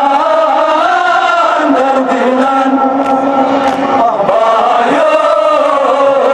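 A group of men chanting a Kashmiri noha, a Muharram lament, in unison. The leaders sing into handheld microphones and the crowd's voices join in. The melodic lines are long and drawn out, held without a break.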